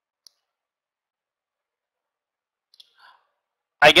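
Near silence, broken by a faint click about a third of a second in and a few faint soft clicks near three seconds.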